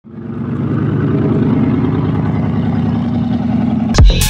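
A car engine running steadily, fading in quickly at the start and cut off suddenly at the end.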